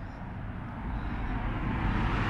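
Distant train passing on a suburban railway line: a steady low rumble with a hiss that slowly grows louder.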